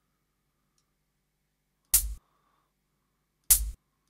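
Two short drum-sample hits from an MPC Beats drum program, each with a deep low end and a sharp top, about a second and a half apart, sounding as single kick and clap notes are auditioned while their velocities are edited.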